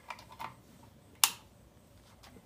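A few light taps and rustles of hands handling fabric and a soldering iron on a cardboard work board, with one sharp click about a second and a quarter in.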